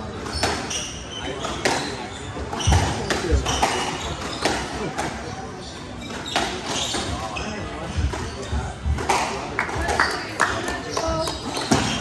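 Squash rally: the hard rubber ball cracks off rackets and the court walls in sharp, irregular strikes, roughly one a second, with spectators talking in the background.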